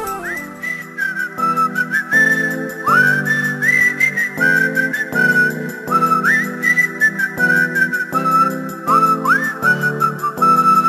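Background music: a high, wordless melody line that scoops up into its notes, whistle- or flute-like, over held chords and a light, steady beat.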